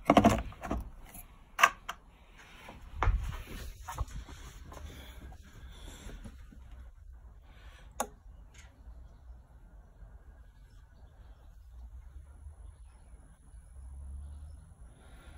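Electric-car charging plug being handled and pushed into the car's charging socket: a cluster of clunks and knocks in the first few seconds, then one sharp click about eight seconds in, followed by a faint steady hum.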